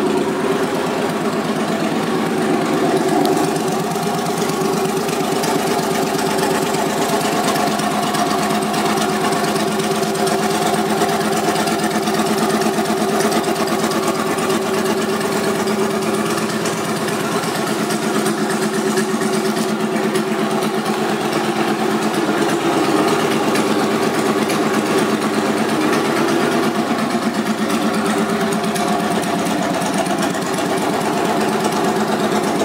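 2005 Suzuki Boulevard C90's V-twin engine idling steadily through aftermarket exhaust pipes.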